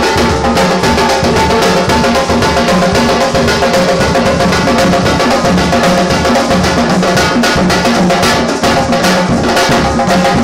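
A group of djembe hand drums played together by hand in a dense, driving rhythm of many strokes a second, with deep bass tones under sharp slaps.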